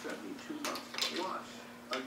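A few light metal clicks and taps as an adjustable checker pushrod is set back into the lifter bore of an LS cylinder head, over a faint steady hum.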